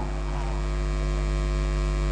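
Steady electrical mains hum through the microphone and sound system: a low, even buzz with a ladder of evenly spaced overtones.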